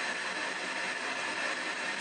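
P-SB7 ghost box scanning through radio frequencies in reverse sweep, giving a steady hiss of radio static.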